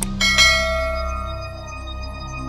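Sound effects of a button click, then a bell chime that rings out and slowly fades, over soft background music.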